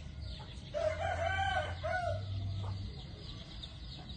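A rooster crowing once, one drawn-out crow starting just under a second in and lasting about a second and a half, over a steady high-pitched hiss.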